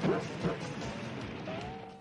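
Cartoon soundtrack: a steady rushing spray of a freshly struck oil gusher under music, with short cries in the first half second.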